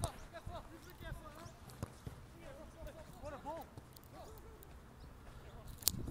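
Faint, distant voices of footballers calling to each other across the pitch during play, with a few short knocks of the ball being kicked, the sharpest one just before the end.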